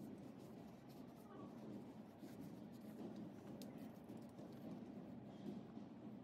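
Faint rubbing of a cloth towel wiping the metal frame and weight-stack housing of a gym cable machine, with a few small clicks, over quiet room tone.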